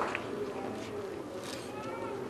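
Faint, indistinct voices talking, with a few higher-pitched gliding calls.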